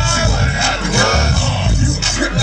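Loud hip hop backing beat with heavy bass, played over a festival sound system during a live rap set.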